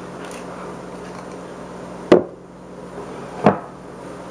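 Two sharp knocks on a hard surface, about a second and a half apart, over a steady low hum.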